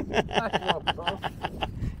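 A man laughing in a quick run of short bursts.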